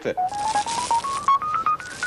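Television advertisement sound effect: a run of about a dozen short beeping notes, each a step higher than the last, climbing steadily over a hiss.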